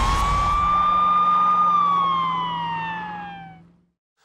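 Siren sound effect in a TV news logo sting: one long wail that holds high, then slides slowly down and fades out over a low steady drone.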